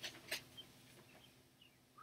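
Near silence: room tone, with one brief click about a third of a second in and a few faint high chirps after it.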